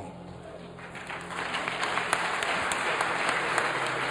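Congregation applauding, swelling about a second in and then holding steady.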